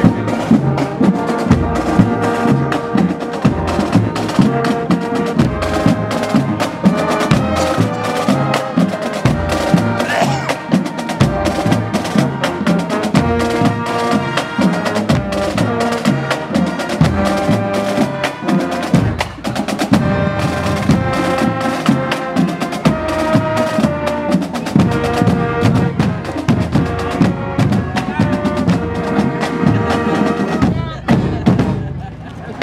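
Marching band playing: trumpets, saxophones and sousaphones carry the tune over a steady marching beat from bass and snare drums.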